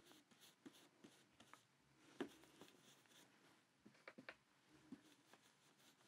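Near silence with a few faint, scattered taps and light scrapes of a blending brush dabbing ink through a plastic stencil onto paper; the clearest tap comes about two seconds in.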